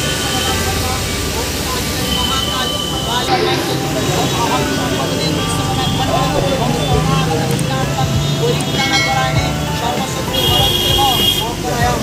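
Busy street ambience: many overlapping voices over steady traffic noise, with no single sound standing out.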